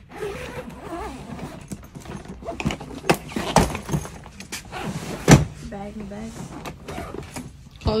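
A hard-shell suitcase being handled: knocks and clicks as it is tipped over and laid flat, with one loud thud about five seconds in.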